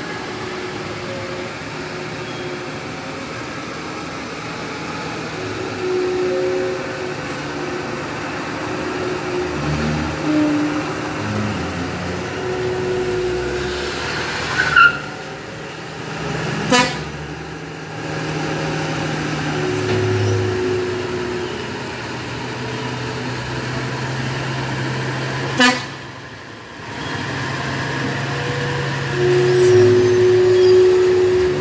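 Heavy truck engines running at low speed, with vehicle horns sounding several held toots of a second or two each. Three sharp knocks stand out, around the middle and near the two-thirds mark.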